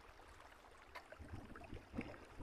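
Faint flow of shallow, muddy floodwater running over concrete, with a low rumble underneath and a light click about a second in.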